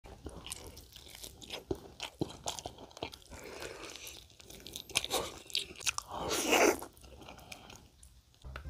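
Crispy fried chicken being bitten and chewed close to the microphone: a run of sharp, crackling crunches, with a louder, longer burst a little past six seconds in.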